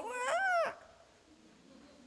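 A man's high-pitched vocal imitation of a newborn crying: one short wail, under a second long, rising and then falling in pitch.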